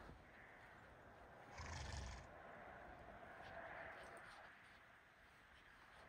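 Near silence: faint outdoor background, with one soft rustling swell about two seconds in.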